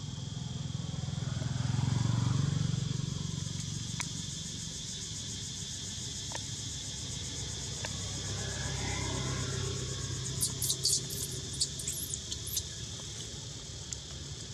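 Outdoor ambience: steady high insect buzzing, with a low engine rumble of passing traffic swelling about two seconds in and again around nine seconds. Near the end comes a flurry of short, sharp high chirps.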